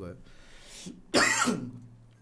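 A man coughs once into a close microphone about a second in, after a short intake of breath.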